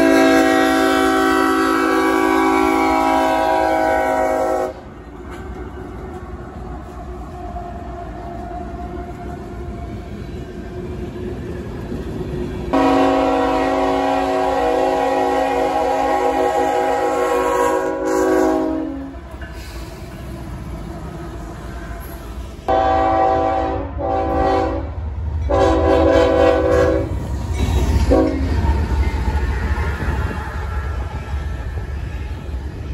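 Freight locomotive's multi-chime air horn sounding two long blasts and then a broken run of shorter ones. Low rumble and rail noise from a passing train build near the end.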